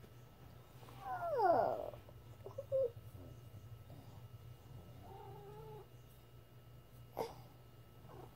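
Domestic cat meowing: one long meow that falls in pitch about a second in, then a short call and a steadier, quieter one later.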